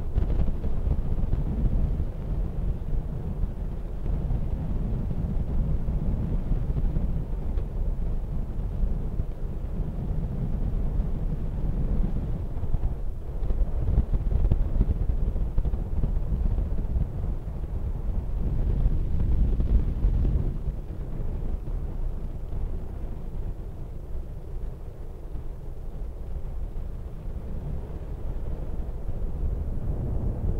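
Wind buffeting the microphone over a steady low rumble of a moving vehicle, recorded from a car driving alongside a camel race track.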